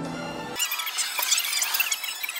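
Background music, then from about half a second in a shrill, squeaky, rapidly warbling chatter with no low end, like a voice played at fast-forward speed.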